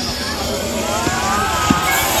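Distant children's voices calling out across an outdoor basketball court during play, with a single low thud of a basketball bouncing about a second and a half in.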